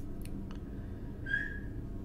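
Room tone with a steady low hum, a few faint clicks, and one brief high whistle-like note about a second and a half in.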